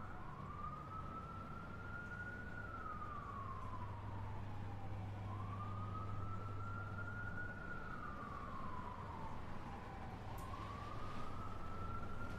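A siren wailing, its single pitch rising for about two and a half seconds and then sliding back down, repeating about every five seconds over a steady low hum.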